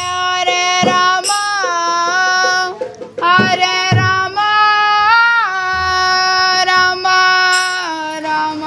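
Music: a high voice sings a melody in long, held notes that slide between pitches, with a few low drum beats about three to four seconds in.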